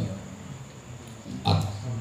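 A brief pause in a man's talk: low room noise, broken about one and a half seconds in by a short vocal sound from him before he speaks again.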